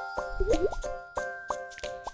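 Light, cheerful children's background music of short plucked notes, with a cartoon 'plop' sound effect, a short rising blip, about half a second in.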